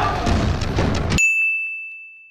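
A busy, noisy mix cuts off abruptly about a second in. A single high ding follows, a steady bell-like tone that slowly fades, typical of an edited transition sound effect.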